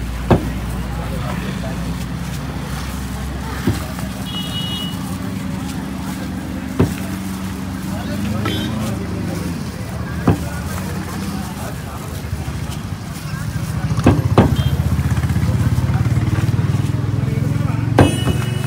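Street noise with a steady low engine hum from a running vehicle, louder in the last few seconds. Sharp knocks cut through it every three to four seconds, with two close together near the end.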